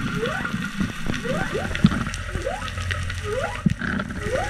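Humpback whale song heard underwater: a run of short rising whoops, about two a second, over a low rumble with a few sharp clicks.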